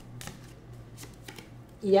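A deck of round Lenormand cards being shuffled between the hands, giving a series of soft, quick card clicks and rustles.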